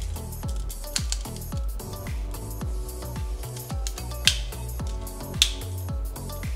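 Background music with a steady beat of low, downward-gliding bass notes, about two a second. Two sharp clicks stand out near the end.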